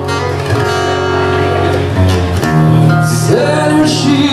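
Acoustic guitar playing sustained chords between sung lines of a song, with a male voice sliding up into a note near the end.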